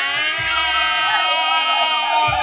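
A voice holding one long, steady note that sinks slightly in pitch.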